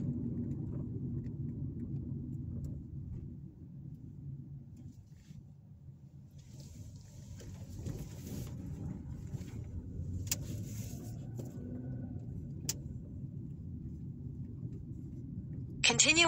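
Low, steady road and engine rumble heard inside a moving car's cabin, easing off in the middle as the car slows through a turn and building again as it picks up speed. Two faint clicks in the second half.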